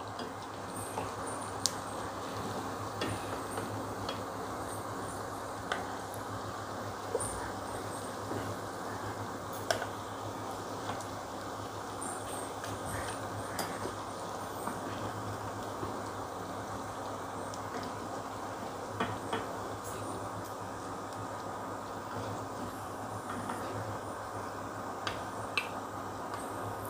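Potato-and-vermicelli cutlets deep-frying in hot oil with a steady sizzle, broken now and then by sharp clicks of a perforated metal spoon against the pan and a glass dish as the cutlets are turned and lifted out.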